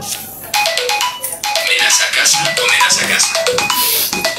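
Mobile phone ringtone playing a melody of short electronic notes, starting about half a second in and stopping near the end, when the phone is answered.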